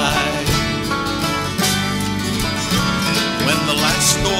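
Country song played by a small band in a pause between sung lines: plucked strings hold sustained notes, with a few sharp percussive hits.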